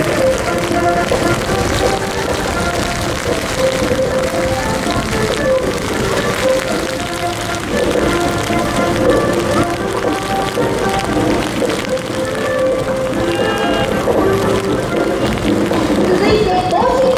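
A military band playing a march, its steady melody carrying over the hiss of heavy rain falling on the wet parade ground.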